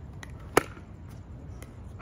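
A pickleball paddle striking the ball on the serve: one sharp pop about half a second in, with a fainter tap just before it.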